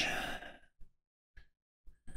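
A man's breathy exhale, like a sigh, fading out within the first half second, then near silence broken by a few faint clicks.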